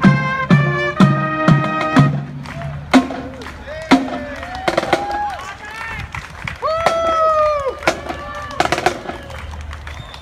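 A high school marching band plays held brass chords over regular drum strikes, and the brass stops about two to three seconds in. Drum strikes carry on after that, with people's voices nearby.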